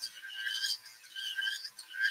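A rotary tool's carving burr grinding away the plastic of a model figure's leg in several short, high-pitched scraping strokes.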